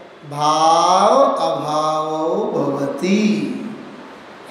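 A man chanting a verse in long, held tones: one sustained phrase, then a shorter one near the end.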